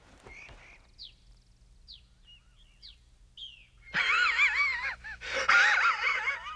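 A few faint, short high chirps, then about four seconds in a cartoon character's loud wavering vocal cry in two long bursts, its pitch warbling up and down.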